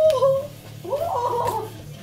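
A high-pitched, wavering human voice wailing in a cat-like way: one cry trailing off about half a second in, then a second, shorter wail about a second in.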